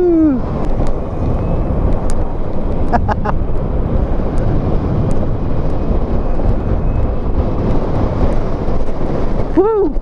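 Wind rushing over the camera microphone with road noise from a small motorbike riding along a paved path. A short vocal sound near the end.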